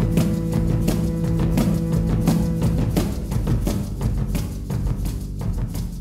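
Live experimental music: a held low drone under a dense, irregular patter of percussive clicks and drum hits. The lowest held notes drop out about halfway through while the clicking goes on.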